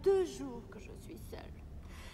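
A woman's voice speaks a brief phrase in French at the start, then a quiet pause in the dialogue of an operetta recording.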